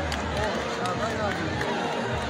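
A large crowd talking and calling out over one another at a steady level, with a few short sharp clicks.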